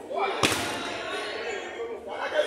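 A single sharp thud of a football being struck hard, about half a second in, with players' voices calling out around it.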